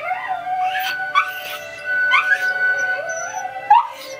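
Scottish terrier howling along to opera music, in several short rising wails over the steady tones of the music.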